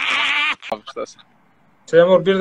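Stork chicks calling with a high, wavering, bleat-like cry that stops about half a second in, followed by two short calls and a brief silence. A man's voice starts just before the end.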